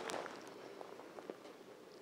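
Faint handling noise from a camera being moved or covered: a few soft clicks and rustles in the first second and a half, then only low room tone.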